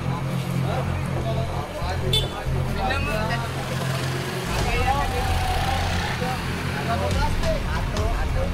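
Several people talking over a steady low rumble.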